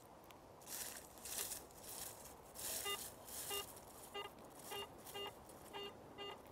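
Garrett AT Pro metal detector sweeping through weeds and dry leaves, with soft swishes of the search coil brushing the growth. From about halfway in it gives a series of short beeps, roughly two a second, as the coil passes back and forth over a target: the detector signalling a non-ferrous hit reading in the high fifties inside the notched range, the buried earring.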